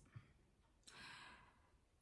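Near silence: a pause in speech, with one faint breath about a second in.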